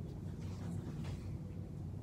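Steady low background rumble, with a few faint soft strokes about half a second and one second in, like a paintbrush working oil paint on canvas.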